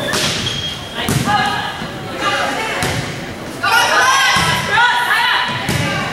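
Volleyball rally in a gym: a series of sharp thuds about a second apart as the ball is struck and hits the floor. Around the middle, high girls' voices call out and shout, louder than the thuds.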